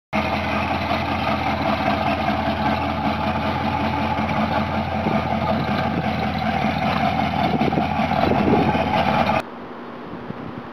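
Car engine running steadily at idle, cutting off suddenly near the end.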